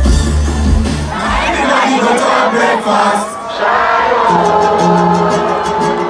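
Loud concert music whose heavy bass drops out about a second and a half in, leaving a crowd of fans shouting and singing. About four seconds in, a new track comes in with held notes and a fast ticking beat.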